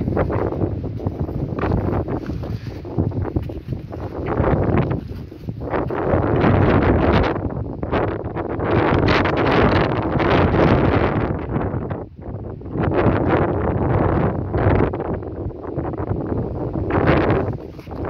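Wind buffeting the microphone in gusts, a loud rushing roar that swells and eases every few seconds.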